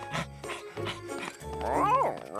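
Cartoon background music, with a cartoon dog's voice (vocal barking sounds) rising and falling near the end.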